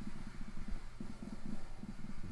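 Nord Drum synthesizer sounding a low drum voice, triggered over and over in quick succession by fingertips on a rubber electronic drum pad, making a low, rapidly pulsing rumble.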